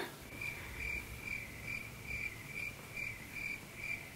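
A cricket chirping faintly and steadily, short single-pitch chirps repeating about two or three times a second.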